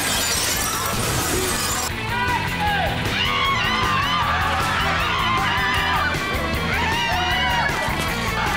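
Plate-glass shop window shattering in a long crash over the first two seconds, over music that carries on with a fast, regular beat.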